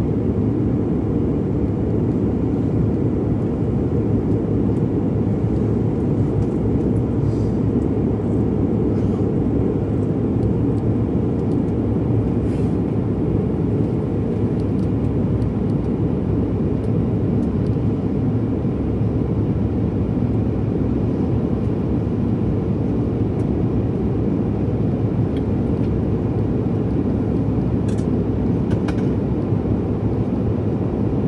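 Airliner cabin noise in flight: a steady, low roar with no change.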